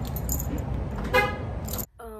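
Steady low vehicle rumble with one short pitched toot a little over a second in; the rumble cuts off suddenly near the end.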